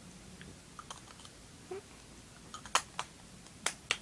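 A few small, sharp clicks and taps from something being handled: faint ones at first, then four louder clicks in the second half.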